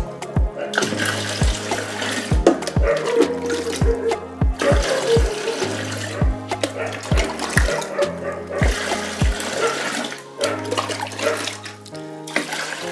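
Water poured from a plastic jug into a tub of water, splashing as it lands, to refill a fish tub during a fifty-percent water change. Background music with a steady beat plays over it.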